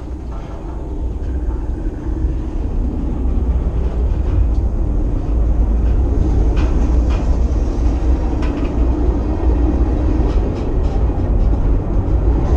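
Freight train cars rolling past at close range, heard from beside the rail: a heavy low rumble of steel wheels on rail, growing louder over the first few seconds and then steady, with scattered sharp clicks.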